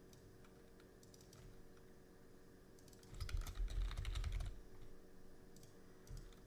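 Typing on a computer keyboard: a few scattered keystrokes, then a quick run of keystrokes with dull thuds about three seconds in, entering a formula.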